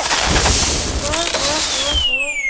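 Cartoon fire-breath sound effect: a sudden loud hissing whoosh as a little dragon breathes fire, with short squeaky voice sounds under it. Near the end a long whistle begins, falling steadily in pitch: the cartoon sound for a fall.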